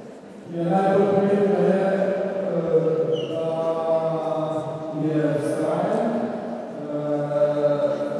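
A man singing or chanting unaccompanied into a handheld microphone in a low voice, with long held notes and short breaks between phrases, about five and about six and a half seconds in.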